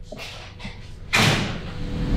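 A door opening, with a loud rush of noise about a second in, then a low thump near the end.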